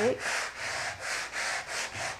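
100-grit sandpaper wrapped around a sanding sponge, rubbed by hand back and forth over acrylic-painted wood in quick, even strokes that rise and fall several times a second. It is light sanding with the grain to knock down the paint ridges on the lettering and give it a worn look.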